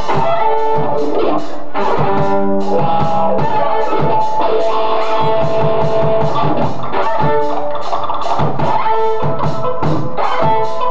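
Live rock band playing an instrumental passage: electric guitar, bass and a steady drum-kit beat, with held violin notes on top and no vocals.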